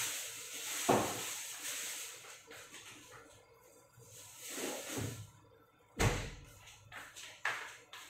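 Sauce simmering in a saucepan on a gas burner, a soft hiss that fades over the first few seconds, with a sharp knock about a second in and a louder thump about six seconds in.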